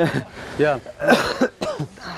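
Men's voices in short, unworded bursts, with a harsh cough-like burst about a second in.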